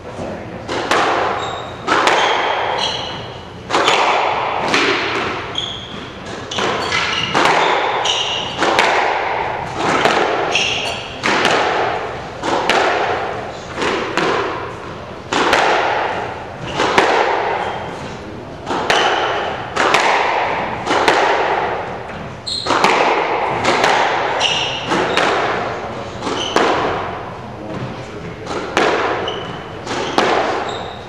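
A squash rally in an enclosed court: the ball cracking off rackets and walls about once a second, each hit echoing, with short high squeaks of court shoes on the hardwood floor between hits.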